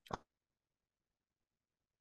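Near silence between spoken phrases, after a brief clipped trailing sound of speech right at the start.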